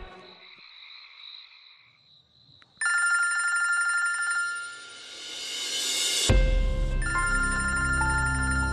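A mobile phone ringtone, an electronic ringing melody that starts suddenly about three seconds in after a quiet stretch. About six seconds in, background music with a low bass comes in under the ringing.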